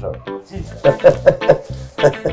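Background music with plucked strings over a steady, repeating bass note.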